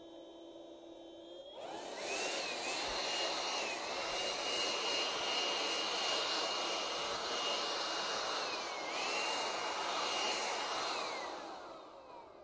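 Handheld electric blower speeding up from a low hum to a high whine over a rush of air about a second and a half in, blowing pollen into a bayberry tree for hand pollination. The motor runs steadily with a few brief dips in speed, then winds down near the end.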